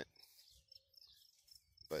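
A faint, steady, high-pitched insect chirring, like a cricket, between a man's spoken words.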